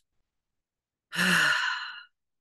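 A woman's single long sigh about a second in: a brief voiced start trailing into a breathy exhale. It is a sigh of frustration at a crochet pattern she finds hard.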